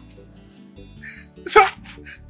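Soft background music score, then one short, sharp vocal outburst from a man about one and a half seconds in.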